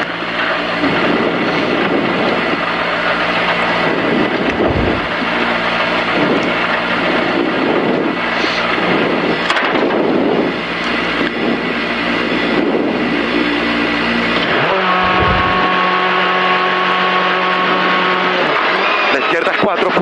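Škoda rally car's engine heard from inside the cabin, running and revving in repeated surges. Near the end the revs are held at one steady pitch for a few seconds.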